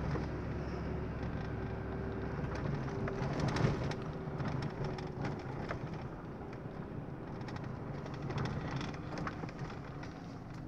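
Car cabin sound while driving along a street: a low, steady engine and tyre rumble, with a faint steady drone in the first half and a few light knocks, the loudest about three and a half seconds in.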